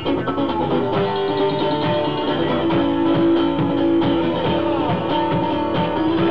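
Live duo music: strummed guitar with a drum and hi-hat beat, and a mouth bow held to a microphone playing sustained, sliding notes over it.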